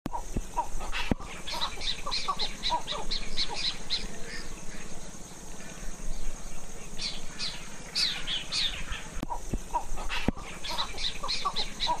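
Birds calling: quick runs of short, high, chattering notes, several a second, with lower notes among them and a quieter lull in the middle. A few sharp clicks sound near the start and again late on.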